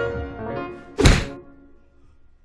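Piano music dies away, and about a second in comes a single loud, short thunk.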